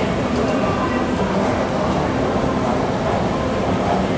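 Schindler 3300 machine-room-less traction elevator car in motion, a steady low rumble inside the cab.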